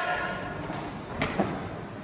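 Low background noise of a large gym hall, with one light click a little past a second in.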